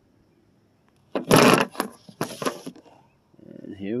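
Two loud bursts of scraping, rustling handling noise right at the microphone as the camera is picked up and set down on the SUV's roof, followed by a man's voice near the end.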